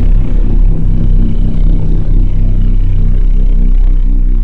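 Loud, steady low drone with a deep hum, an eerie ambient soundtrack laid under an edited title card.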